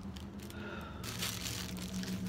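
Crinkling and rustling of packaging being handled, growing about a second in, over a faint steady low hum.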